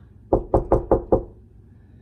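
A quick run of five knocks, about five a second, on what sounds like a window pane.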